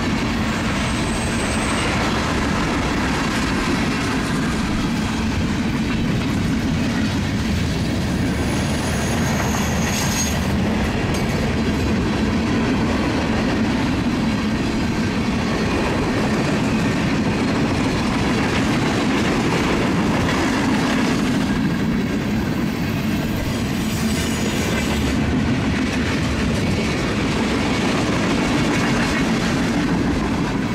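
A freight train of tank cars rolling past at close range: a steady rumble of wheels on the rails, with a few brief high-pitched squeals.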